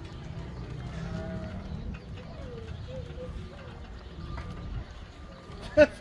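Outdoor background: a steady low rumble with faint wavering calls in the distance, then a man's loud "ja, ja" laugh near the end.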